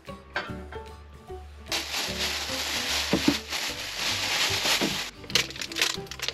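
Fernbrake stems sizzling in a hot stainless pot, a steady hiss that starts about two seconds in and cuts off about a second before the end. Background music plays throughout.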